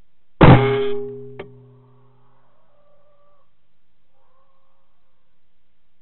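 A single rifle shot, sudden and loud, its report ringing and fading over about a second, followed a second later by a sharp click. Faint drawn-out squeals come after it, twice.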